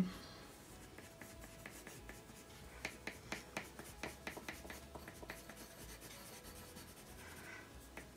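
Colored pencils scratching faintly on paper in short, quick shading strokes laid down as fur, with a denser run of strokes from about three to five and a half seconds in.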